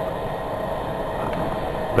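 Electric startup blower of a charcoal gasifier running with a steady whir, drawing gas through the gasifier and filter out to a flare before the engine is started.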